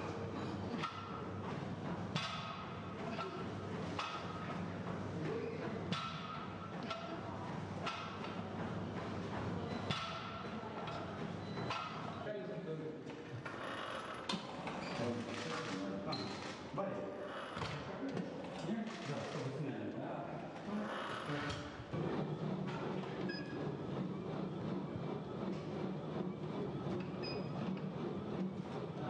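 Gym sounds: scattered metal knocks and clinks from barbell plates and weight-machine parts being worked, under indistinct voices in the room.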